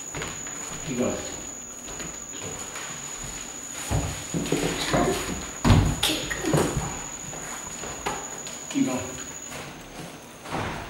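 Bare feet thudding on a hardwood floor as a boy spins and lands tornado kicks, with two heavy thuds about four and six seconds in.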